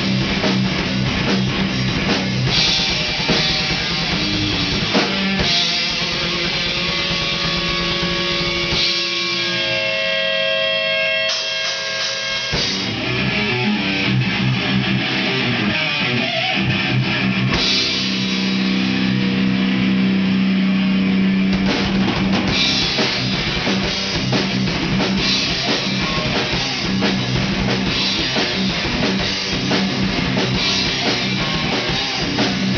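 Live heavy metal band playing: distorted electric guitars, bass guitar and drum kit. From about six seconds in the drums thin out under sustained, ringing guitar notes, and the full band crashes back in about twelve seconds in.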